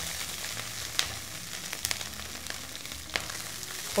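Broccoli sizzling in hot oil with chopped chili as it is added to a frying pan, a steady hiss broken by a few light clicks from the florets and spatula against the pan.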